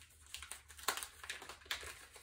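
Paper wrapping crinkling and rustling in irregular crackles as a small wrapped mini skein of yarn is handled and unwrapped.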